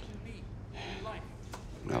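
Faint voices in the background over a low, steady room hum, with a man's voice starting up just at the end.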